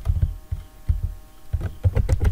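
Computer keyboard keys struck one at a time, heard as a few dull low thuds at irregular intervals, over a faint steady hum.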